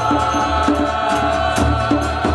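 A small group of men and women chanting a mantra together, holding long sung notes over a steady beat of small hand percussion.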